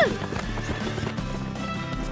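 Galloping horse hoofbeats, a sound effect, over steady background music.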